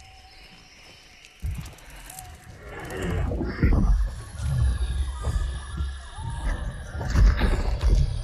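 Film sound effects of a large dinosaur close by: a deep growl that starts about a second and a half in and builds louder, with pitched, honking vocal sounds over it from about three seconds on.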